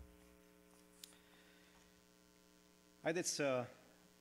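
Steady, quiet electrical mains hum in the church sound system, with a faint click about a second in. Near the end a man's voice briefly speaks into the pulpit microphone.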